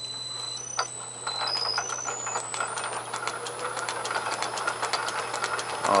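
South Bend lathe starting up and running with a tapered aluminum lap, charged with silicon carbide grit and oil, turning in the MT3 headstock taper. Under a steady motor hum, a high whine climbs in steps over the first three seconds. It then gives way to a fast, even ticking as the lap runs in the taper.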